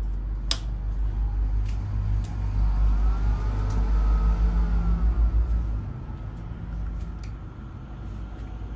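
Deep bass rumble from a test track played loud through speakers driven by a PCM20 power amplifier. It swells and pulses in the middle and eases off near the end, with faint higher tones sliding over it and a few light clicks.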